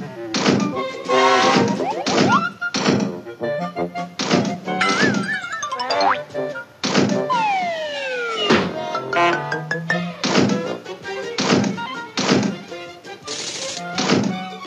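Bouncy comedy music from a TV commercial, full of slapstick sound effects: many sharp knocks and thunks, boing-like springy notes, a wavering tone about five seconds in and a long falling glide about seven seconds in.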